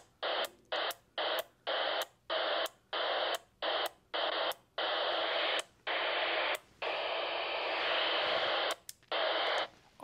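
Ailunce HA2 handheld ham radio's speaker hissing static on the NOAA weather channels, in a dozen or so short bursts that cut on and off with brief silences between. No weather broadcast comes through, which suggests the station is not being received here.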